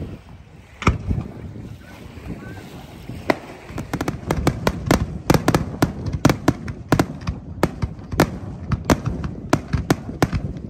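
Aerial fireworks going off: a couple of separate bangs in the first few seconds, then from about four seconds in a quick run of sharp bangs, several a second.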